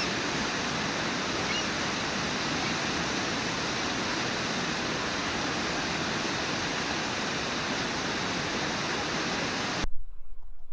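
Brooks Falls, a low river waterfall, rushing steadily as water pours over its lip. The sound cuts off abruptly near the end.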